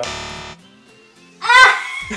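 A short edited 'wrong answer' sound effect: a harsh, buzzing musical sting of about half a second, signalling an incorrect guess. About a second and a half in, a loud, high voice exclaims or laughs.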